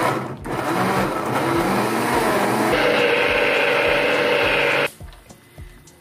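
Philco countertop blender running, puréeing a thick load of cooked cassava with coconut milk and cream. It dips briefly just after the start, its sound changes about three seconds in, and it cuts off suddenly about five seconds in.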